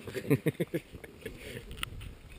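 Faint, indistinct men's voices: a short burst of voice about half a second in, then only low background noise.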